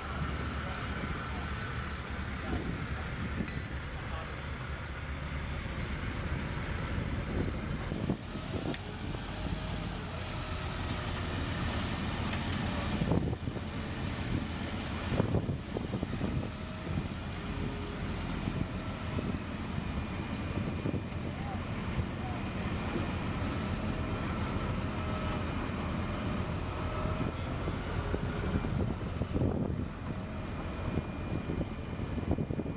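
Heavy military trucks' diesel engines running in a steady low rumble, including a wrecker towing an MRAP. Two sharp knocks a couple of seconds apart come about halfway through.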